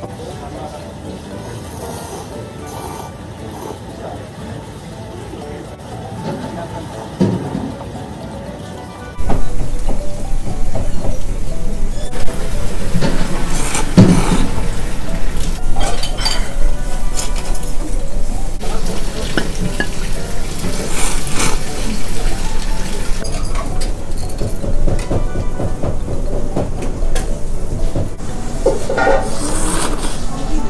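A person slurping and chewing thick ramen noodles close to the microphone: loud, irregular wet slurps with small clicks. They start abruptly about nine seconds in, after a quieter stretch.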